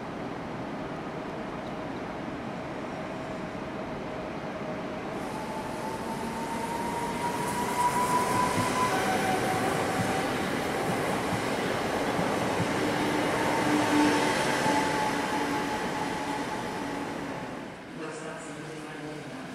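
EN77 electric multiple unit running along the platform. Its traction gear whines in several steady tones that drift slowly in pitch over the rumble of its wheels on the rails. The sound swells as the train comes alongside, loudest about halfway and again a few seconds later, then cuts off shortly before the end.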